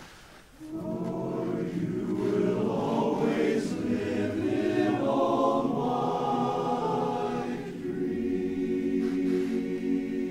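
Men's barbershop chorus singing a cappella in close harmony. After a brief break about half a second in, the voices come back in, grow loudest around the middle, then settle into a held chord near the end.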